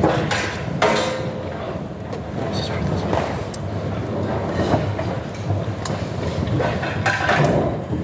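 Indistinct murmur of many voices talking at once, with no clear words and no instruments playing.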